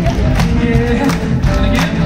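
Live rock band playing a song through a concert PA, recorded from the audience: a drum kit keeps a steady beat of about three hits a second under electric guitars and keyboard.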